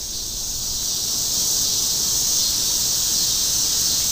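Steady, high-pitched chorus of evening insects, a continuous chirring that does not let up.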